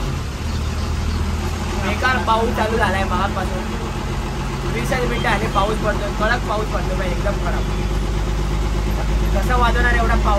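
Bus engine running, a steady low hum heard from inside the cabin, under a man talking.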